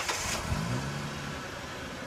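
A car engine sound effect: it comes in suddenly, the engine note climbs about half a second in and then holds steady while slowly fading.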